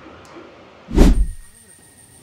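A single loud thump about a second in, heavy and low with a sharp front, dying away within about half a second.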